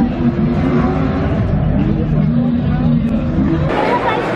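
Off-road vehicle engines revving up and down over and over, with crowd chatter behind. Near the end the sound cuts abruptly to a general hubbub of voices.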